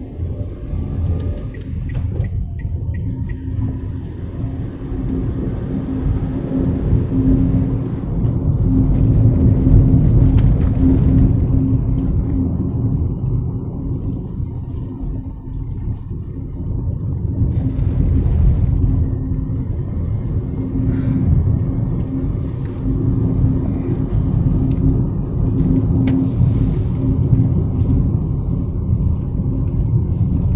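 Engine and road noise of a moving car heard inside its cabin: a steady low rumble with a hum, swelling a little about a third of the way in.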